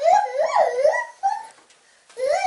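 A toddler making loud wordless sing-song calls, the pitch swooping up and down several times over about a second and a half before stopping.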